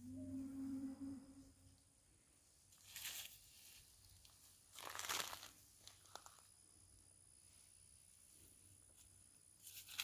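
Hands scraping and pushing loose dirt into a planting hole, two short crunching scrapes about three and five seconds in. A brief low hum sounds at the start.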